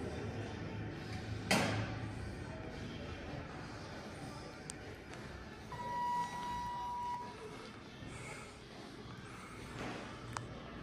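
A sharp knock about one and a half seconds in. A little past the middle comes a steady electronic beep of one pitch, lasting about a second and a half, the kind an elevator sounds at its car or hall signal.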